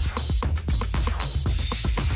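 Electronic dance music played from a DJ's decks, with a steady kick-drum beat, bass and crisp hi-hats.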